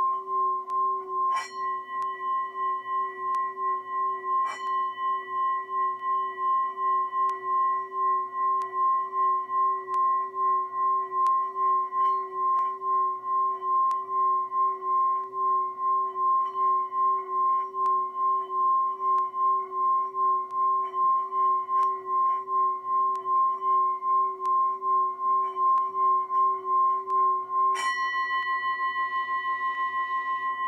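Brass singing bowl rung by rubbing a wooden mallet around its rim: a sustained ringing tone that swells and fades a couple of times a second, with a few light knocks of the mallet against the rim. Near the end a knock comes, and the bowl then rings on more evenly.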